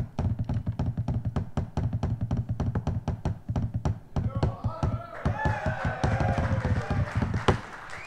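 Wooden drumsticks played on a rubber drum practice pad: a fast, steady run of dry taps and rolls that stops just before the end.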